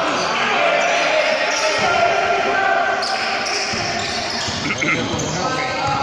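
Youth basketball game in a sports hall: the ball bouncing on the wooden court and players' shoes on the floor, under a steady mix of players' and spectators' voices calling out, all reverberating in the hall.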